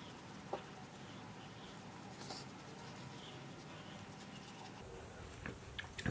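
Faint soft brushing of a round foundation brush buffing foundation into the skin, with a short hiss about two seconds in and a few small ticks near the end.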